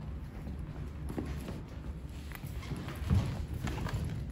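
Footsteps of shoes on a hard stone-tiled floor, a few uneven steps, over a steady low hum. A louder low thump comes about three seconds in.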